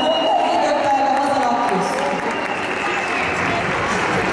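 An announcer's voice echoing through a large hall's loudspeakers, giving way about halfway through to audience applause.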